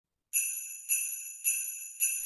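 A bell-like chime struck three times, about half a second apart, each ringing out and fading, with a fourth strike right at the end: the opening of a Christmas song's accompaniment.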